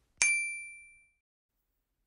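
A single high, bell-like ding, struck once about a fifth of a second in and fading away over about a second: a chime marking the switch to the next interview question.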